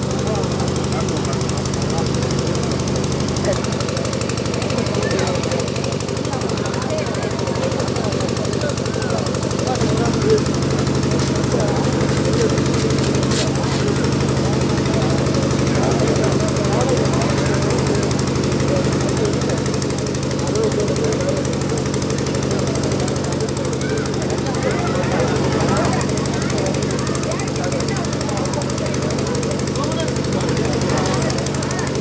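An engine running steadily with a fast knocking beat, its note shifting slightly about ten seconds in, with people's voices over it.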